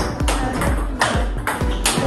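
Table tennis ball clicking sharply off rubber bats and the table in a fast rally of topspin forehand drives, the hits coming every few tenths of a second. Background music plays underneath.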